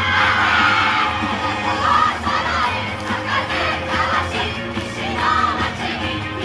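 Yosakoi dance team shouting calls together in unison, repeated several times, over their loud dance music.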